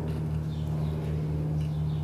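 A steady low hum with several overtones and a faint low pulsing, holding the same pitch throughout, with no clicks or knocks.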